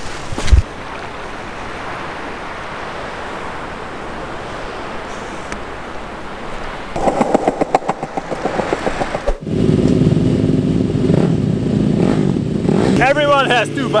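Wind rush and rolling noise of a bicycle ridden over paving stones, with a knock just after the start. A sudden cut more than halfway through brings in a steady low drone of several held tones, and a voice shouts near the end.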